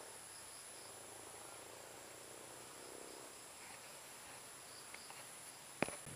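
Faint, steady, high-pitched chirring of insects in vegetation, with a single sharp click near the end.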